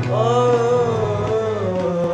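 A young man singing one long, wavering note of a Punjabi kalam, accompanied by a harmonium holding a steady low drone.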